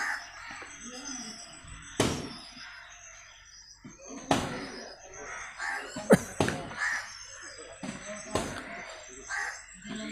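A marker pen tapping and writing on a whiteboard: a handful of sharp taps, about five, spread over several seconds, with faint background sounds between them.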